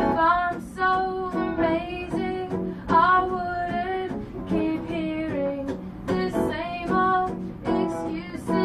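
A woman singing a folk song while strumming a guitar, her voice carrying one melody line in phrases of a second or two over steady strummed chords.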